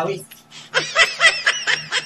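A person laughing: a quick run of repeated laughing sounds starting just under a second in.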